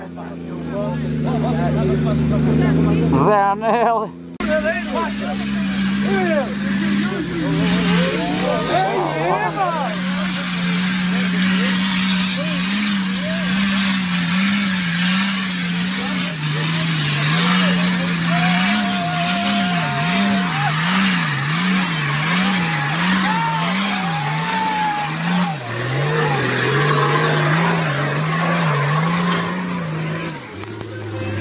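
Nissan Patrol 4x4 engines working at high revs on a steep, rocky off-road climb. The revs surge up and down rapidly and continuously as the tyres scrabble for grip over loose dirt and rock. Spectators' voices are faintly heard.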